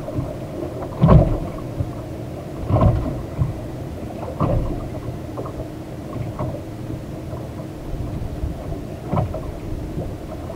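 Water slapping against a small fishing boat's hull, with irregular low thumps every second or few over steady wind and water noise.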